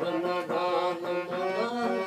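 Harmonium playing a devotional bhajan melody in sustained reedy chords, with a man's voice chanting along.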